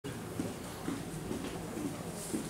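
Background sound of an airport lounge bar: a steady low hum with faint, indistinct murmuring.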